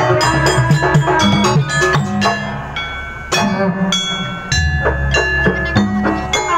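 Janger gamelan ensemble playing live: struck metal keyed instruments ringing over hand-drum strokes, thinning for a moment in the middle and coming back in with a strong stroke a little past halfway.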